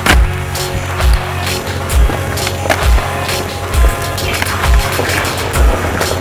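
Skateboard on asphalt doing flatground tricks: wheels rolling, with sharp clacks of the board popping and landing, the strongest right at the start. Background music with a steady beat plays throughout.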